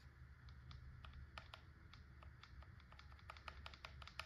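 Faint, irregular small clicks and ticks of hands handling and twisting fittings on a paintball marker in a plastic chassis, over near-silent room tone.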